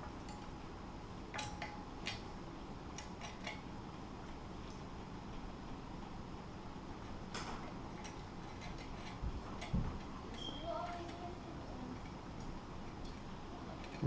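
Scattered light metallic clicks and clinks of steel mailbox mounting brackets and bolts being handled and fitted together, with a couple of duller knocks near the end, over a faint steady hiss.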